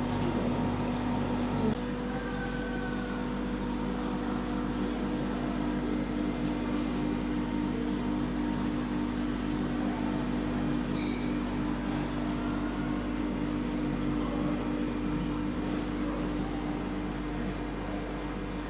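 Steady mechanical hum made of several even tones over a low rumble. One of the tones cuts out about two seconds in.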